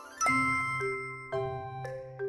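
Music: a rising run leads into a loud chord about a quarter second in, followed by a second chord about a second later, with held notes over a bass line.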